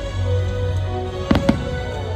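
Two sharp firework bangs in quick succession, about a second and a half in, over the fireworks show's music.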